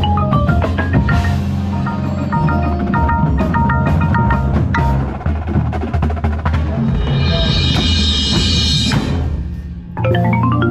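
Drum corps front ensemble playing: a rosewood-bar concert marimba struck with yarn mallets, in quick runs and repeated notes over a steady low bass. A rushing swell in the upper range builds from about seven seconds and cuts off just before nine.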